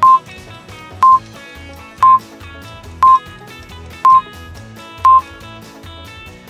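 Countdown timer beeps: six short, loud, high beeps, one each second, marking the last seconds of a countdown, over background music.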